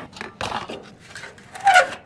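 Old sheet-metal furnace vent cap scraping and clicking against the metal vent pipe as it is worked loose and pulled off, with the loudest scrape near the end.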